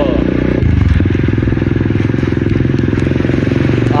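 A 125cc dirt bike's single-cylinder engine running steadily while it is ridden. Its note shifts lower and a little louder about half a second in.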